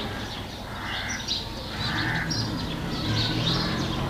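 Birds chirping and calling, short scattered calls over a low steady hum.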